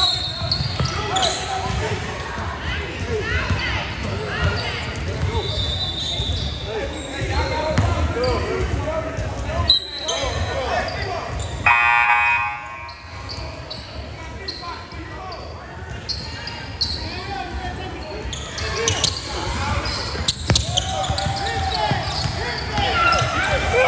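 Basketball game sounds in a gym hall: players and spectators shouting and talking, with a basketball dribbling on the hardwood court. About twelve seconds in, a buzzer sounds for about a second.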